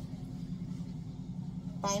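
A steady low hum, like a running motor or machine, with a woman's voice starting near the end.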